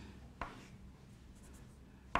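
Chalk writing on a blackboard, faint, with one sharp tap of the chalk against the board about half a second in, over a steady low room hum.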